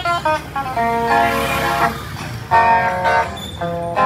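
Amplified electric guitar playing an instrumental bolero passage between sung verses, a melody of short plucked notes with a denser stretch of held notes about a second in.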